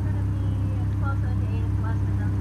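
Steady low electrical hum from an open drive-through intercom speaker, heard through the car's open window, with faint voices in the background.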